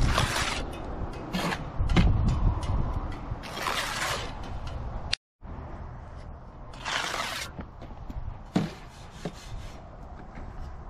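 Steel brick trowel spreading wet mortar along the tops of concrete blocks: a few long scraping swishes a couple of seconds apart, over a low rumble. The sound cuts out completely for a moment about halfway through.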